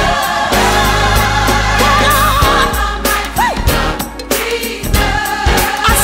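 Gospel music: a choir singing over a band with a sustained bass line. About two seconds in, a held sung note wavers with vibrato.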